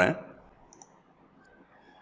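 A few faint computer clicks in a near-quiet room as the freshly typed Python program is run, after a man's voice trails off at the very start.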